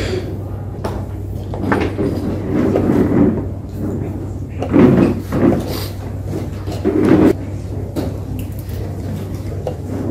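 Wooden chess pieces knocking as they are set down and taken on the board, with presses of the chess clock, over a murmur of voices and a steady low hum.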